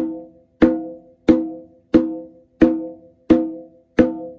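Conga played lightly with open tones: single hand strokes on the drumhead at an even pace, about three every two seconds, each a short pitched ring that dies away before the next. They are played from the forearm only, without a full stroke.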